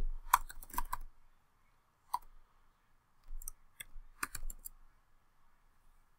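Computer keyboard keys tapped in short runs while text is retyped: a quick flurry of keystrokes in the first second, a single key about two seconds in, then another run of several keys from about three and a half to under five seconds.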